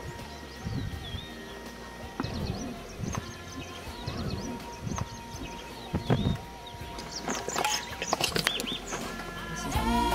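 Birds chirping, many short high calls, over outdoor background noise with a few scattered knocks. Music fades in near the end.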